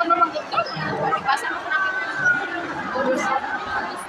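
Women talking over breakfast: continuous conversational speech at the table, which the speech recogniser did not write down.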